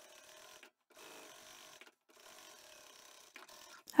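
Pro Sew sewing machine stitching a straight seam, running with a faint, steady hum that drops out briefly twice.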